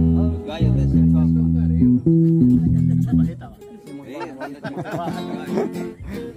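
A small string band of acoustic guitars and an electric bass playing held chords that change about once a second. The playing drops away about three and a half seconds in, and near the end a voice calls out "ay, ay".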